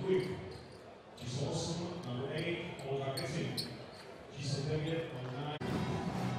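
Live sound of a basketball arena in a large hall: several voices talking, with a few short, sharp high clicks around the middle.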